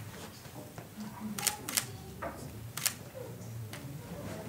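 A few sharp clicks, the loudest two close together about a second and a half in and another near three seconds, over faint low murmuring voices.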